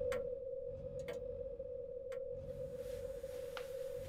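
A clock ticking about once a second over a steady held tone.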